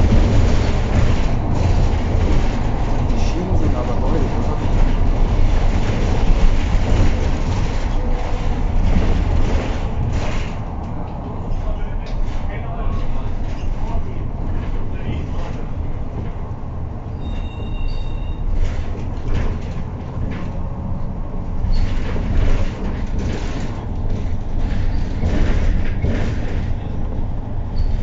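Interior of a MAN natural-gas city bus under way: steady low rumble of the engine and road, with rattling and knocking from the body and fittings. A short two-tone beep sounds a little past halfway.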